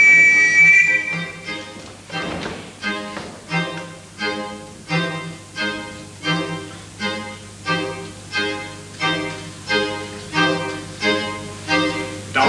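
Live theatre underscore from the pit band, with violin and strings. A high note is held for about the first second and a half, then a steady pulse of chords follows, each dying away, about one every 0.7 seconds.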